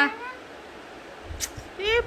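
A child's high-pitched voice: a brief sound right at the start, then a short rising vocal sound near the end. About a second and a half in there is a single sharp click.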